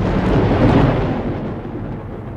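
A thunderclap rolling into a long rumble that swells within the first second and slowly dies away.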